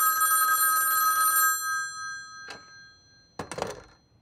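An electric bell of the old telephone or doorbell kind rings steadily, stops about a second and a half in, and its ring dies away. A single click follows, then a short voice-like sound near the end.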